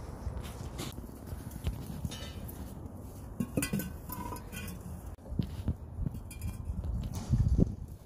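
Glazed ceramic bird bath pedestals clinking and knocking as they are handled and set down on concrete pavers, in scattered knocks with the loudest near the end, over a steady low rumble.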